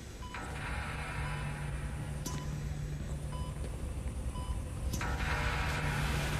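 A hospital patient monitor beeping about once a second over a low, steady drone that slowly swells.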